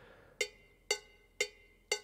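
A sampled cowbell in a GarageBand iOS drum track, playing a looped four-note pattern: evenly spaced metallic strikes about two per second, each ringing briefly.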